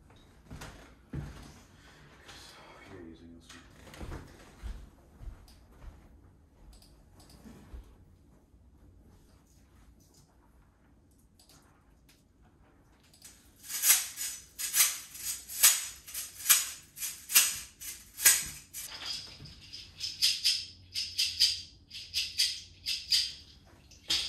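Faint low knocks and room sound, then about thirteen seconds in a hand-shaken percussion instrument starts, a rhythmic bright shaking of about two strokes a second that keeps on, with a thin ringing edge near the end.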